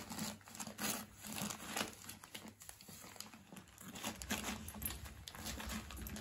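Christmas wrapping paper crinkling and rustling in irregular bursts as a Bedlington terrier puppy paws and noses at a wrapped present.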